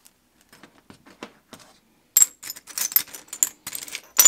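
Pieces of stained-glass scrap clinking against each other and the glass dish as they are rummaged through and picked out. A few faint clicks, then from about halfway a quick run of sharp, bright clinks.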